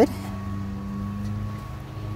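A steady, low mechanical hum with a faint thin whine above it, unchanging throughout.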